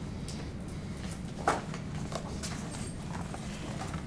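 A hardcover picture book being handled and its pages turned: a few light ticks and a soft rustle about one and a half seconds in, over a steady low room hum.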